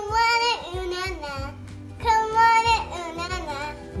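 A child's voice singing two long held notes, about two seconds apart, over background music.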